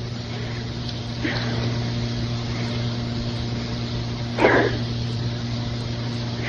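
A woman caller choked up with emotion on a telephone line, with no words: sniffing, sobbing breaths about a second in and a louder one past four seconds, over a steady low hum on the line.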